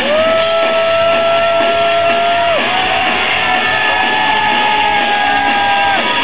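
Live rock band playing loud, with a long held high note over the band for about two and a half seconds, then a slightly higher note held for about three seconds.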